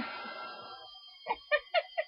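Heat gun blowing with a steady whir that dies away over the first second, then a woman laughing in four short, quick 'ha's.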